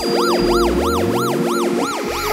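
Electronic music: a siren-like synth tone warbling up and down in pitch about three times a second over a sustained chord, with low sweeps rising underneath.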